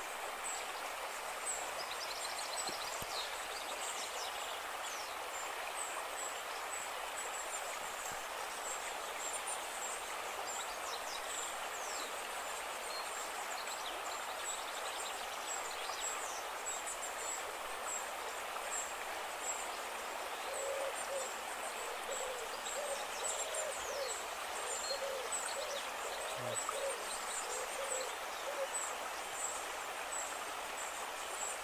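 A shallow stream running over stones, with scattered high chirps of birds or insects. From about two-thirds of the way in, a bird gives a run of repeated hooting calls, roughly two a second for several seconds.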